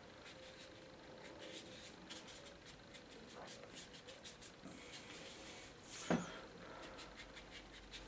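Faint, scratchy strokes of a watercolour brush working paint across wet watercolour paper, with one short, louder noise about six seconds in.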